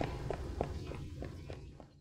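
Quick footsteps on a paved path, about three a second, growing fainter as the walker hurries away.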